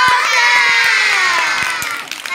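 Several children shouting together in one long, high cheer that rises at the start, slides slowly down and fades near the end.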